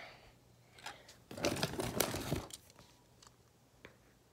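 Handling noise from a toy car being turned in the hands right at the phone's microphone: a rustling scuff in the middle, with a few small clicks before and after.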